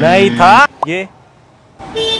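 People's voices: a loud burst of exclaimed speech at the start, then a short pause, and more talk beginning near the end.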